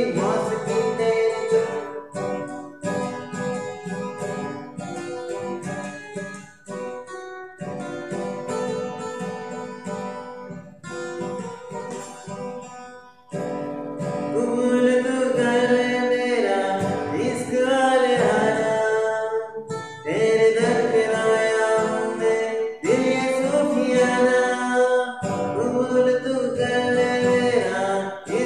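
Acoustic guitar strummed in a steady rhythm; from about halfway through, a man sings over it.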